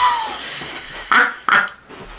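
A woman laughing out loud: a high laugh that falls in pitch and trails off, then two short bursts of laughter about a second in.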